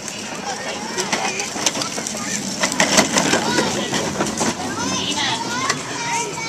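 Young children's voices chattering and calling out on a playground, with scattered sharp clicks and knocks, most of them in the first half.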